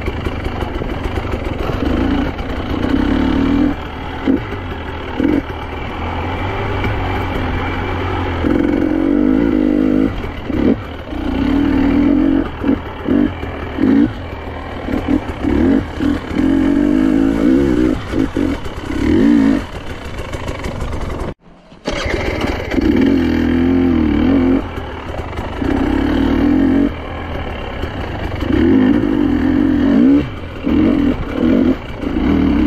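2023 KTM 300 EXC two-stroke single-cylinder dirt bike engine under way, opening and closing the throttle in repeated short bursts. The sound cuts out briefly about two-thirds of the way through.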